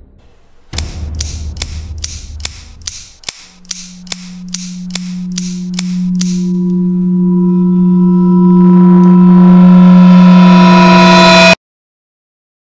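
Film sound effects: a clock-like ticking a little over twice a second, quickening slightly, dies away about six seconds in. Under it, a low steady drone comes in about three seconds in and swells louder as higher tones join it, then cuts off suddenly just before the end.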